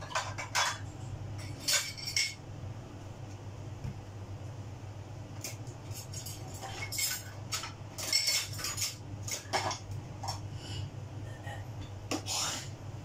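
Scattered clinks and knocks of kitchen containers and utensils being handled on a steel counter, coming in small clusters, over a steady low hum.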